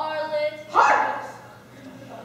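A young woman's voice speaking on stage, then a loud, short vocal outburst about three-quarters of a second in that dies away within half a second.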